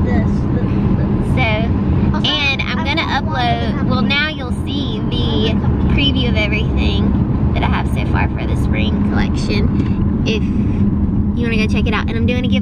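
A woman talking inside a car, over the car's steady low cabin rumble.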